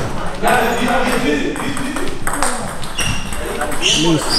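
Table tennis balls clicking off bats and the table in quick, irregular rallies, over background voices.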